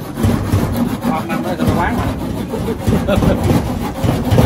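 A large plastic bag rustling and scraping as it is pulled down from overhead and handled, in an uneven run of crinkling and rubbing, with voices in the background.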